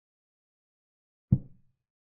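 A chess board program's piece-move sound effect: one short, low knock as a piece is set down on its new square.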